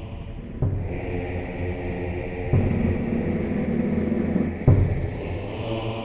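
Background film music: sustained low drone chords that change with a sharp accented hit three times, about every two seconds.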